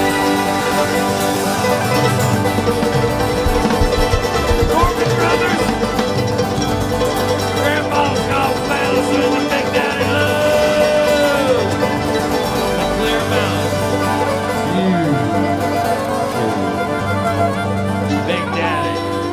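A bluegrass band playing live: acoustic guitars, banjo and upright bass with drums, running steadily.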